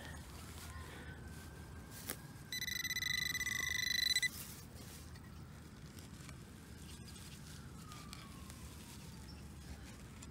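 A metal detector's high electronic tone sounds for about two seconds, starting about two and a half seconds in: one steady buzzing pitch that pulses rapidly, signalling a metal target in the freshly dug hole. Around it only low outdoor background, with a single faint click.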